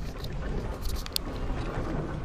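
Low rumbling wind and handling noise on a small camera's microphone as it is moved about, with a few sharp clicks about a second in.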